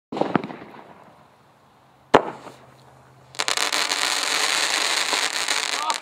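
Single-shot parachute firework cannon launching its shell from the tube, followed about two seconds later by one sharp, loud bang as the shell bursts. From a little past three seconds in, a dense crackling hiss runs until just before the end.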